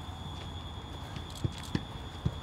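Footfalls of footballers stepping over mini training hurdles on grass turf: a few soft, irregular thuds, two of them in the second half.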